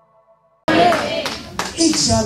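A soft sustained music tone fades out, then about two-thirds of a second in the sound cuts in suddenly to a congregation clapping, with voices over it.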